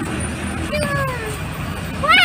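A child's short, high-pitched voice call about a second in, falling in pitch, over a steady low rumble of outdoor background noise.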